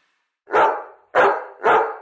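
A curly-coated dog barking three times, about half a second apart, starting about half a second in.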